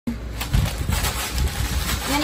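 A plastic zip-top bag full of dried flowers rustling and crinkling as it is pressed shut and handled, with a few soft knocks.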